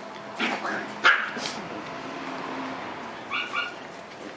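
Shiba Inu puppies yipping. The loudest sharp sound comes about a second in, and two short, high yips follow in quick succession near the end.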